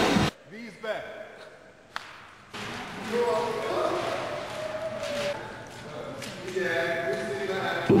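Rock music playback cuts off just after the start. What follows is indistinct voices talking in a large room, with a couple of sharp knocks in the first two seconds, until the music starts again at the end.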